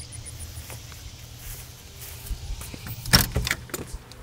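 Quiet outdoor background with a faint, rapid insect chirping that fades out in the first second. About three seconds in comes a short burst of clicking and rattling, the loudest sound here.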